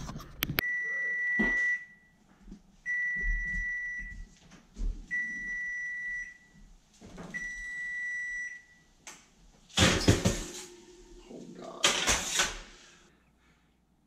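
Electric range's timer alert: four long, even beeps about two seconds apart, signalling the baking time is up. Then two loud bursts of clatter as the oven door and the baking sheet are handled.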